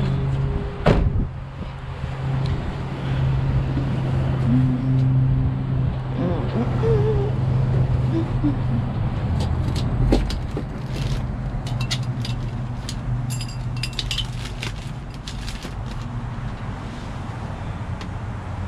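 A steady low vehicle engine hum runs throughout, with a single sharp knock about a second in. In the second half, a run of short clicks and crackles as cardboard boxes and plastic packaging in a dumpster are poked and shifted with a grabber tool.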